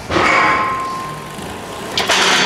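Steel Smith machine bar clanking as it is set down, with a metallic ring that fades over about a second and a half, then another clank at the very end.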